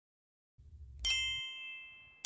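A single bright ding sound effect, struck about a second in and ringing down as it fades. It is the reveal chime of the animation, marking an answer popping up on screen.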